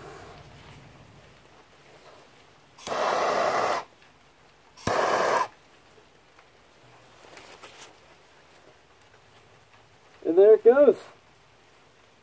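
Handheld butane torch lighter firing twice: two short hisses, about a second long a few seconds in and about half a second long near five seconds, the second starting with a sharp click of the igniter. A short vocal sound follows near the end.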